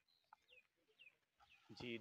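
Near silence with a few faint, short bird calls that fall in pitch, in the first second or so.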